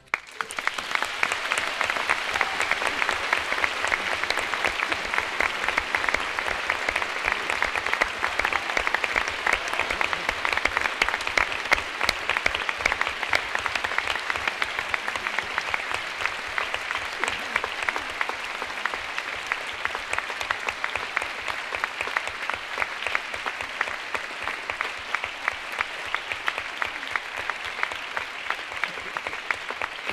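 Large opera-house audience applauding, dense and steady, breaking out just as the orchestra stops and easing off slightly toward the end.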